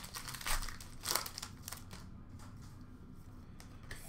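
Foil trading-card pack wrapper crinkling as it is handled and torn open. The crisp crackles come mostly in the first two seconds and grow fainter after that.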